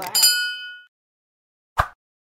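A bright bell-like ding from a subscribe-button animation's notification-bell sound effect, ringing with several overtones and fading out within about three quarters of a second. A single short click follows near the end.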